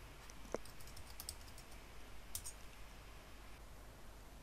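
Faint clicks of a computer keyboard and mouse: a scatter of keystrokes through the first second and a half and a couple more a little past the middle. A short faint blip comes about half a second in.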